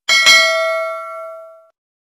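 Notification-bell ding sound effect: a bright bell tone struck twice in quick succession, ringing and fading out over about a second and a half.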